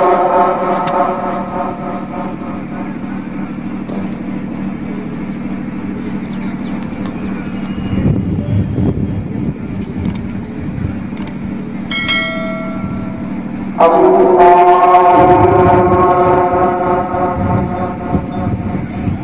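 An imam's voice over a loudspeaker chanting long, drawn-out Eid prayer calls. It fades out about two seconds in, leaving a steady low hum, and comes back loudly about 14 seconds in. A brief high chime sounds about 12 seconds in.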